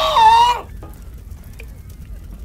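A man's high-pitched, drawn-out shout of "Fireball!" that ends about half a second in. After it only a faint low rumble is left.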